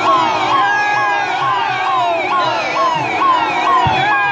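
An electronic vehicle siren sounds in a fast repeating cycle, a quick rise then a slower fall, about twice a second. A second set of falling sweeps sits higher up, and a brief low thump comes near the end.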